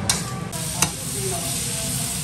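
Sliced Chinese sausage frying in a hot wok, a steady sizzle that grows stronger about half a second in. Two sharp knocks, one right at the start and one near a second in.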